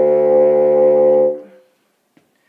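Bassoon holding one steady low note, most likely low D, as a step in a slow chromatic scale. The note ends about a second and a half in.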